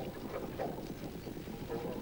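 Faint, steady outdoor ambience from a trotting track: a low, even rumble with no distinct events, heard in a pause of the race commentary.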